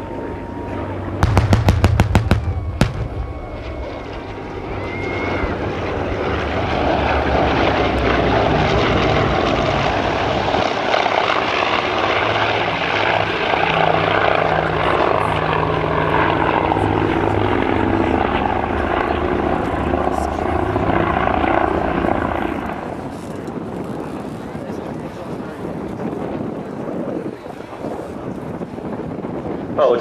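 A quick string of pyrotechnic blasts about a second in, set off to simulate a strafing run. Then piston-engined warbirds, a Hawker Sea Fury followed closely by a twin-engined Grumman F7F Tigercat, fly past with a loud engine sound that builds through the middle and eases off about 23 seconds in.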